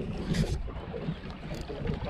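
Wind buffeting the microphone on an open boat at sea, a steady low rumble with a few faint knocks.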